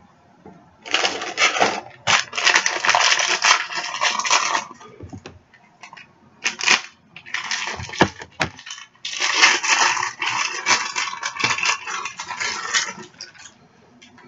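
Plastic packaging of a collectible mini figure crinkling and rustling as it is worked open by hand, in two long stretches with a few sharp clicks between them.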